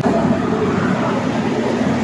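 Steady, loud street traffic noise: an even hiss and rumble of passing vehicles with no distinct single event.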